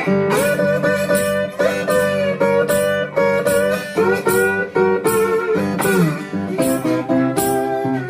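Acoustic guitar playing instrumental blues live, with notes that slide in pitch over a steady beat.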